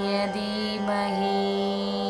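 Devotional mantra chanting music: a chanted note ends about a second in, leaving a steady sustained drone with Indian classical string accompaniment.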